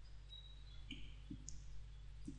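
A few faint clicks of a computer mouse over a steady low electrical hum, as the presentation slide is advanced.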